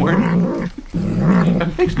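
A tabby cat growling while it gnaws corn on the cob: a long, low, wavering grumble, with a few crunches of chewing.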